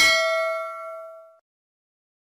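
A single bell-chime 'ding' sound effect, the notification-bell chime of a subscribe-button animation, ringing out and fading away within about a second and a half.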